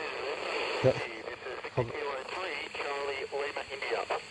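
FM satellite downlink from the SO-50 amateur satellite playing through a Yaesu FT-817ND's speaker: a steady hiss with a faint, distorted voice of another station coming through it, clearest in the second half.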